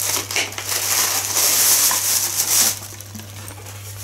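Plastic packaging rustling and crinkling as it is handled, dying down a little under three seconds in.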